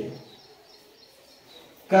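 Quiet room tone with a faint hiss in a pause between a man's spoken sentences: his voice trails off at the start and comes back just before the end.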